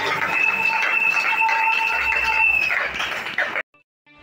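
Electronic organ holding sustained notes over voices through the church sound system, cut off abruptly near the end.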